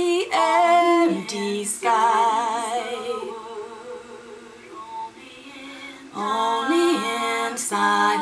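A woman singing a cappella, the melody of a round sung over a recording of her own voice; the held notes waver with vibrato. The singing drops quieter in the middle and swells back a couple of seconds before the end.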